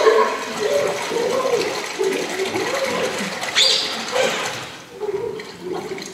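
Water sloshing and gurgling in a plastic basin worked close to a microphone as a live sound effect, with a sharper splash about three and a half seconds in; it dies down near the end.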